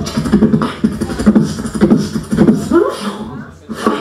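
Beatboxing into a handheld microphone: a fast run of vocal drum hits, with a short gap about three and a half seconds in before the beat comes back.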